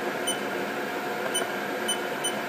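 Haas CNC vertical mill humming steadily while it stands idle, with three short high ticks.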